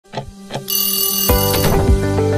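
Two short ticks, then an alarm-clock ring sound effect starting just under a second in. An upbeat music track with a steady drum beat comes in about halfway through and carries on.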